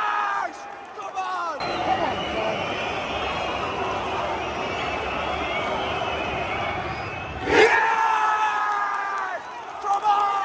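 Football stadium crowd: a short chant breaks off in the first second, then a tense murmur with scattered whistling while a penalty is lined up. About seven and a half seconds in, the away fans erupt in a loud cheer as the penalty goes in, rolling into chanting.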